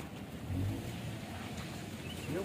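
A vehicle engine running with a low, steady hum that swells slightly about half a second in.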